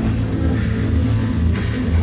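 Loud dance music playing over a club sound system, with a heavy, continuous bass.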